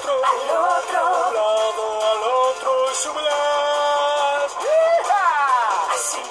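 A children's cartoon hoedown song: a voice sings in Spanish over a band. It holds a long note past the middle, then swoops up and slides down in pitch near the end.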